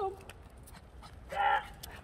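A dog barks once, sharply, about one and a half seconds in, with a few faint clicks around it.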